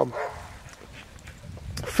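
A faint, brief vocal sound from an eight-week-old Australian Shepherd puppy held in a man's arms.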